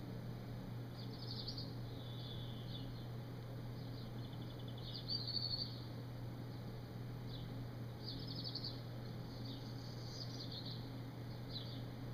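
Tobacco pipe being puffed: short bursts of faint crackly sound every second or two, over a steady low hum.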